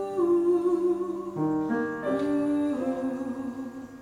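A mezzo-soprano sings slow held notes with vibrato over a Steinway grand piano accompaniment.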